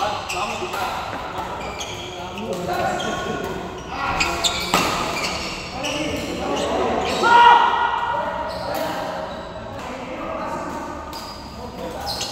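Badminton rally: repeated sharp racket strikes on a shuttlecock, echoing in a large sports hall, with players' voices in between.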